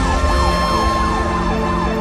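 Emergency vehicle siren wailing, its pitch sweeping quickly up and down several times a second, over background music.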